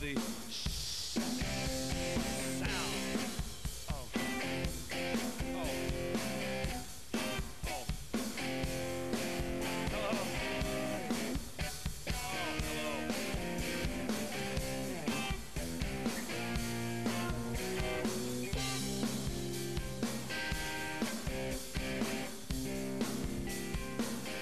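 Rock band playing a song's instrumental intro live, with drum kit, electric guitars and bass guitar playing together at a steady beat.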